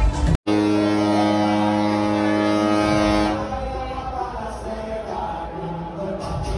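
Cruise ship's horn sounding one long, deep, steady blast, the sail-away signal as the ship leaves port. The blast starts just after a brief cut-out and stops about three seconds in.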